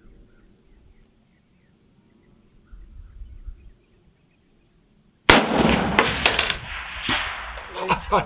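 A single rifle shot from a scoped USMC MC-1952 M1 Garand sniper rifle in .30-06, fired about five seconds in after a quiet hold, with a long rolling report that carries on to the end.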